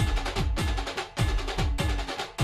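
Dance music with a heavy bass drum, each beat dropping in pitch, over other percussion.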